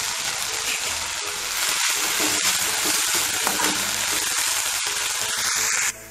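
Mint leaves sizzling steadily in hot oil in a steel kadai, cutting off suddenly near the end.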